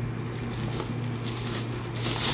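Soft rustling and crinkling of a thin plastic sleeve as a laptop is handled and slid into a foam-lined box, over a steady low hum.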